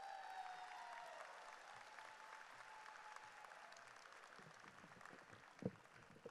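Audience applauding in a large arena, faint and slowly dying away, with a few held cheers over it in the first couple of seconds. A single thump comes near the end.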